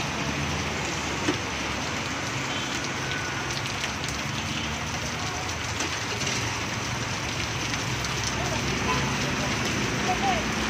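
Heavy rain falling steadily, a dense hiss of drops pattering on surfaces, with one sharp knock about a second in.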